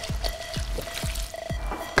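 Melon liqueur pouring in a steady stream from a glass bottle onto fruit in a large tub of punch, over background music with a steady beat.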